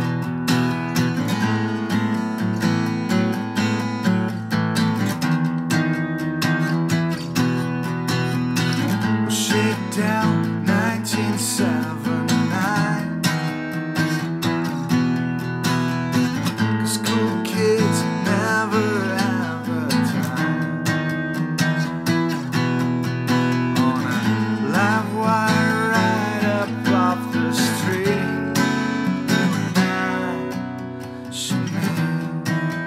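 Acoustic guitar played continuously, strummed and picked in a steady rhythmic pattern.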